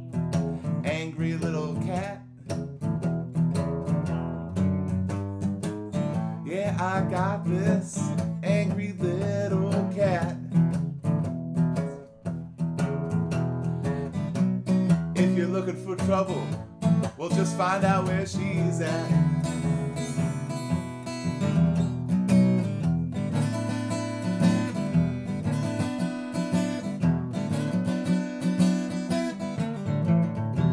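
Steel-string acoustic guitar strummed in a steady blues accompaniment, growing fuller and brighter in the second half.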